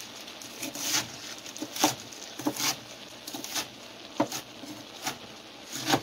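Large kitchen knife chopping leafy greens and stems on a wooden cutting board: irregular knocks of the blade striking the board, about two a second.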